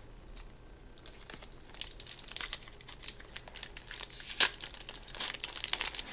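Foil Magic: The Gathering booster pack wrapper crinkling and crackling as it is handled and pulled open. The crackles start about a second in, with one sharper crack past the middle.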